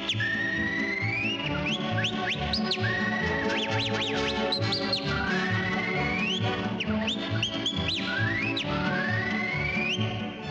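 Whistled melody with swooping upward glides, played over a 1920s dance-band accompaniment with a steady beat.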